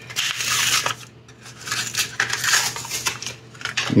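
A plastic blister pack and its card backing being torn open by hand, crackling and tearing in two bouts of about a second each.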